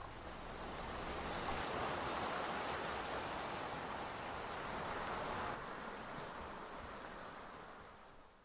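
Fast-flowing floodwater in a creek, a steady rushing sound; it turns duller about five and a half seconds in and fades near the end.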